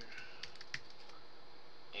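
Computer keyboard keys tapped a few times as a word is typed. The clicks are sparse, with the two clearest close together in the first second.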